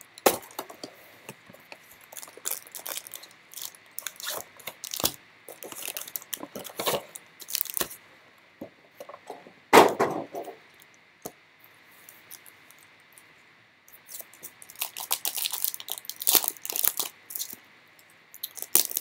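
Handling of a cardboard hobby box and foil-wrapped trading card packs: scattered crinkles, taps and clicks, with one louder thump about ten seconds in. Near the end a denser run of crinkling and tearing as a pack wrapper is ripped open.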